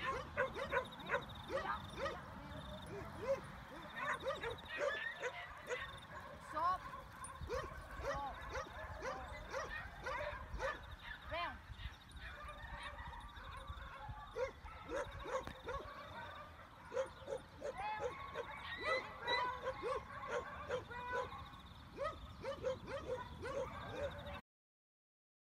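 Dogs yapping and yipping in many short, rapid calls, with a brief lull about halfway through.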